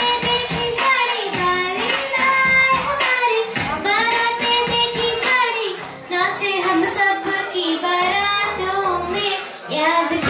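A young girl singing a song into a microphone, holding long notes and sliding between them.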